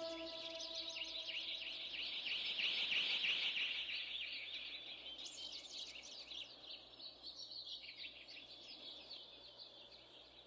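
The last note of the music dies away, leaving faint, rapid chirping of small birds that thins out toward the end.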